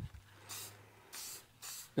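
Aerosol can of spray varnish hissing in three short bursts, laying a quick sealing coat over a painted transfer panel.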